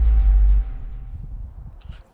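The fading tail of a cinematic boom in an intro music sting: a deep rumble that holds for about half a second, then dies away over the rest.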